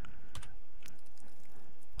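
A few faint clicks of a computer keyboard and mouse as the Delete key is pressed to clear a selection.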